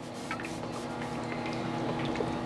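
An HHO electrolyzer making hydrogen-oxygen gas from water, with the gas steadily bubbling and fizzing through the water in the generator and the bubbler. A faint steady tone lies underneath.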